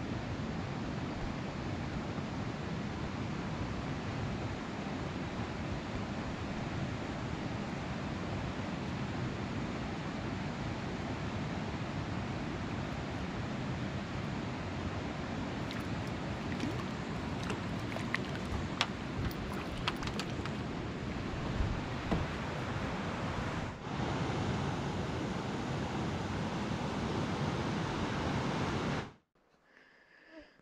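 Steady wind rushing over the microphone, with small waves lapping against a kayak hull. A few light clicks come during the middle stretch, and the sound cuts off suddenly near the end.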